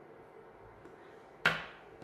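Faint room tone, then a single sharp knock about one and a half seconds in that dies away quickly: a small hard object handled on the bench.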